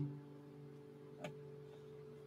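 Eastman 805 archtop guitar's strings faintly ringing on a low note, with one light click about a second in.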